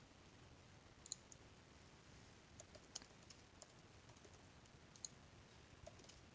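Near silence with a few faint, scattered clicks from a computer keyboard as text is typed.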